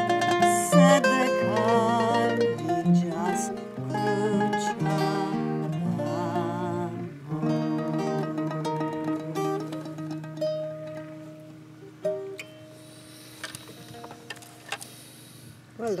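Mandolin and acoustic guitar playing the closing instrumental bars of an Irish ballad. A last chord rings out about twelve seconds in and the music stops.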